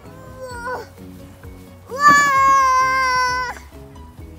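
Background music, with a young child's loud, high-pitched vocal cry about two seconds in, held steady for about a second and a half.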